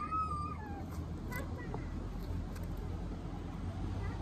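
A brief high-pitched whine, held and then falling away under a second in, over a steady low background hum.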